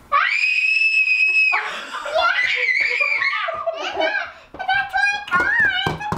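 A young boy's excited scream of delight: one long, high-pitched shriek of about a second and a half, followed by more high squeals, laughter and excited child babble.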